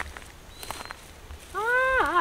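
A high-pitched, wordless human cry, a man's voice: one long call that rises and then falls, starting about one and a half seconds in and turning wavering at the very end. Before it come faint rustles and steps in dry brush.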